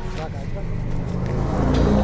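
Car engine and road noise on a mountain road, growing louder through the second half as a vehicle passes close.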